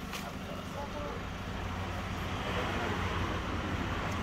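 Steady low engine rumble with a broad background noise, growing slowly a little louder.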